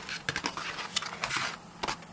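Cardstock pieces of a handmade box and accordion album being handled: a quick run of short rustles, taps and light scrapes of card.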